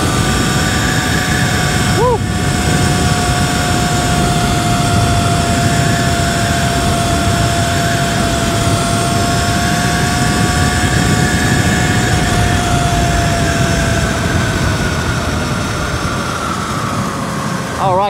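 Sur-Ron electric dirt bike at about 60 mph: heavy wind rush over the microphone with a steady high electric-motor whine on top. The whine drops slightly in pitch over the last few seconds as the bike slows.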